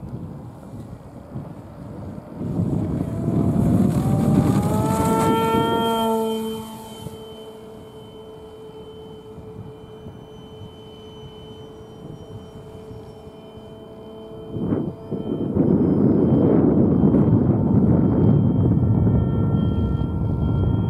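Electric motor and propeller of a foam RC trainer plane throttling up for takeoff: a whine rising in pitch over the first few seconds, holding, then cut back about six and a half seconds in, leaving a faint steady tone. From about fifteen seconds a loud rough rushing noise takes over.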